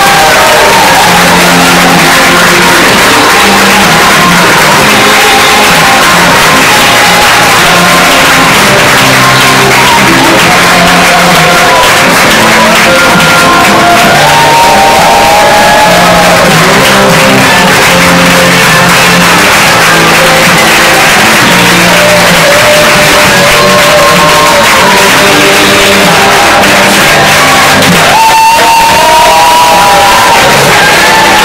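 Loud music playing over a crowd clapping and shouting.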